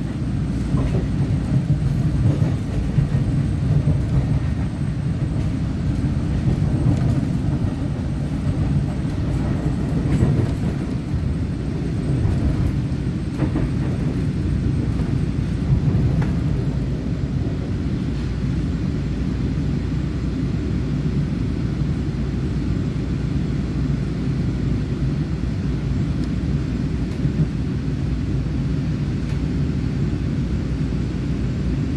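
Inside a Taiwan Railways EMU900 electric multiple unit under way: a steady low rumble of wheels on rail and running gear, with a few light knocks in the first half. A faint high-pitched whine stops about halfway through.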